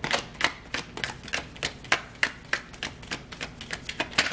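A tarot deck being shuffled by hand: a quick, even run of sharp card clicks, about four a second.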